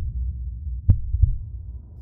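Deep, pulsing heartbeat-like bass sound effect of trailer sound design, with one sharper hit about a second in.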